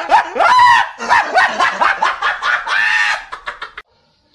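A man laughing hard and loudly in rapid, pitched bursts, breaking off abruptly near the end.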